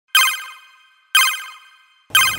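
Electronic chime sound effect marking a countdown, struck twice a second apart, each bright ringing tone fading away before the next.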